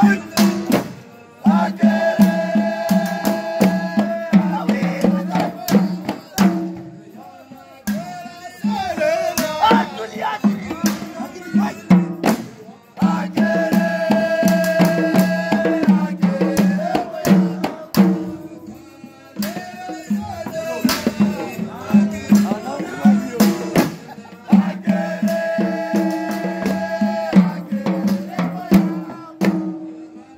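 A group of men chanting a Comorian moulidi devotional hymn together, with frame drum beats throughout. Long held sung notes come back as a phrase about every eleven seconds, with looser singing in between.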